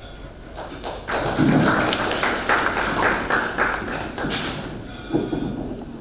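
Audience clapping in applause, beginning about a second in and dying away near the end.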